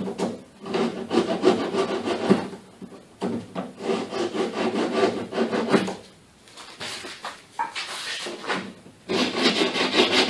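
Hand file rasping on the hard plastic lip of a Honda Civic door's window opening, in runs of quick back-and-forth strokes with short pauses about three seconds in and again around six to seven seconds. The plastic edge is chipped and chewed up and is being filed smooth.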